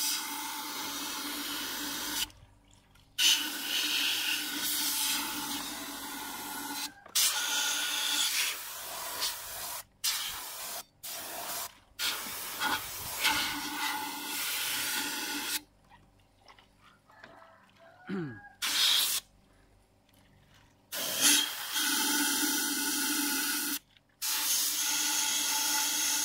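Compressed air hissing out of a gravity-feed spray gun in repeated bursts of one to five seconds as the trigger is pulled and released, blowing through a pipe into soapy water.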